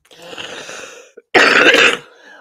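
A person coughing: a quieter throat-clearing sound for about a second, then one loud cough near the end.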